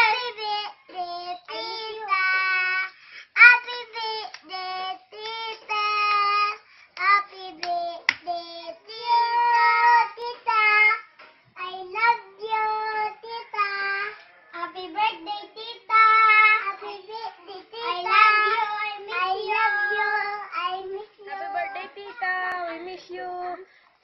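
A child singing a song: a high voice holding steady notes one after another, with short breaks between phrases.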